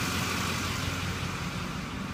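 Duramax V8 turbo-diesel of a Chevrolet Express van idling steadily.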